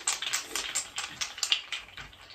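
A wood-therapy wooden massage tool worked quickly over oiled skin, making a quiet run of light clicks and taps, about six a second.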